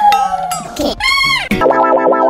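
Cartoon-style sound effects and music dubbed over the picture: a held tone that slides down, a short sound that rises and falls in pitch about a second in, then a held musical chord near the end.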